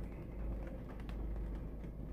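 Steady low rumble of a car's cabin, with a faint tick or two and no voice.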